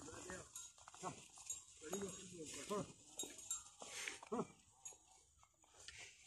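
Bells on a yoked pair of plough oxen jingling as the team works, with a dozen or so short calls coming and going.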